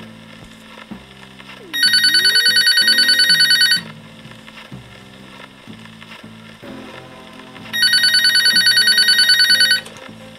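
Electronic ringtone of a reproduction Eiffel Tower telephone: two trilling rings about two seconds long and six seconds apart, each pulsing about ten times a second. It is a modern warble rather than a retro bell.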